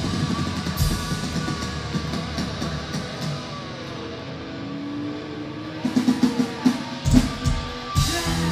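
Live rock band, with electric guitars, bass and drum kit, playing loud. Past the middle the band drops back to held, ringing guitar chords, then the drums come back in with a quick run of hits near the end.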